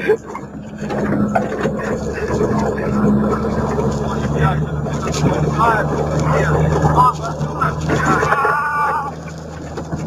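A vehicle's engine running steadily under voices, its low hum stepping up slightly in pitch about four seconds in.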